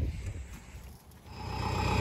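Forklift engine idling steadily, coming in about a second in and growing louder, after a low rumble of wind on the microphone.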